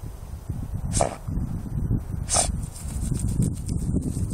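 Schnauzer digging after a mouse with its nose in the hole: steady low scuffling and scraping of paws and dirt, broken by two short, sharp hissy bursts about a second and a half apart.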